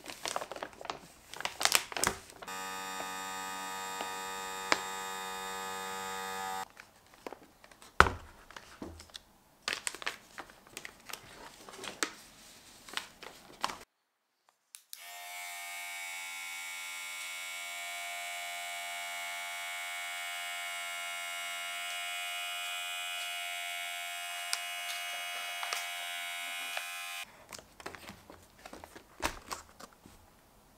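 Small USB-powered electric vacuum pump, screwed onto a storage bag's valve, running with a steady whine as it draws the air out of the bag. It runs for about four seconds early on, then again from about fifteen seconds in for about twelve seconds. Between the runs there is crinkling and clicking of plastic bags being handled.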